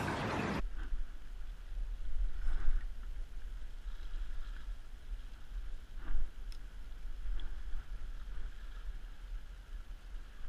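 Steady low wind rumble on the microphone and faint water lapping against the rocks, with a few soft knocks. A brief louder rush of noise stops suddenly about half a second in.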